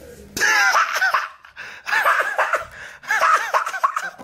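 High-pitched laughter in three short bursts, each a run of quick rising-and-falling "ha" sounds.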